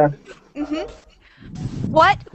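Brief laughter over a video-call line: short rising voice sounds with a breathy stretch near the end.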